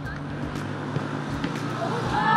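Open-air football pitch sound: a steady low hum with scattered faint knocks, among them the thud of a ball struck for a penalty kick. Voices start shouting near the end.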